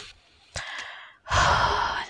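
A person's long sigh, a breathy exhale close to the microphone, in the second half, after a faint rustle with a single click.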